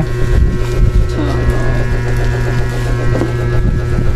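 A small motor running steadily close by: a steady low hum with a faint higher whine held over it.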